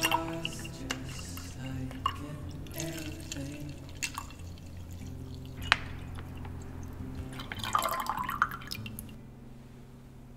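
Cold-pressed juice being poured from a plastic pouch into a glass tumbler, splashing and trickling into the glass, over background music. About eight seconds in, the pour's pitch rises as the glass fills.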